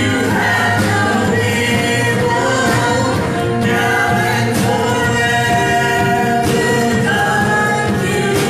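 A live church worship band plays a gospel song, with a small group of singers holding notes in harmony over drums and keyboard.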